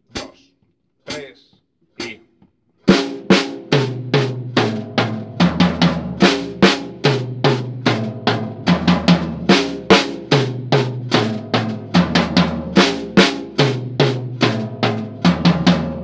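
After three evenly spaced count-in clicks, a drum kit plays a syncopated exercise over a backing track with a bass line: the figure of two sixteenths and an eighth is moved to the floor tom on the fourth beat, with the hands alternating right-left.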